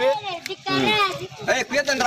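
Speech: a man talking, with other voices close around him.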